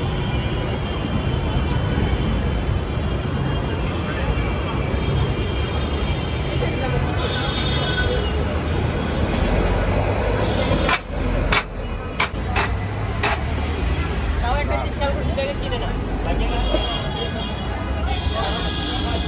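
Busy street ambience: a steady rumble of traffic with people's voices in the background, and a few sharp clicks a little past the middle.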